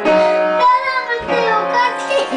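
Upright piano being played, with notes struck at the start and again about halfway through and left ringing. From about half a second in, a voice sings along in wavering, gliding pitches.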